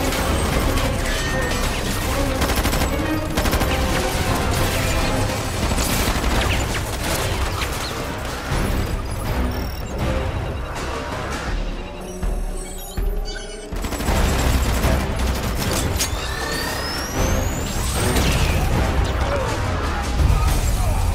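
Rapid volleys of rifle fire from a squad of soldiers mixed with a dramatic action score. Later the gunfire thins out and rising, sweeping sci-fi effects come in over the music.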